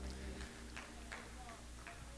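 A few faint, irregular clicks over a low steady hum, with no speech.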